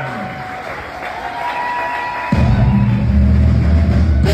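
Audience noise and light applause, then about two-thirds of the way in a live band comes in with a loud, low held note.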